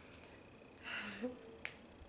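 A woman's soft breath and a short hummed 'mm' about a second in, followed by a sharp mouth click.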